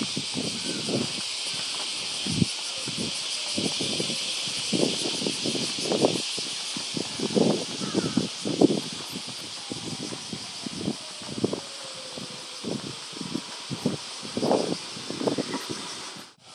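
Footsteps on a paved street at a walking pace, about one and a half to two steps a second, over a steady high hiss of outdoor ambience.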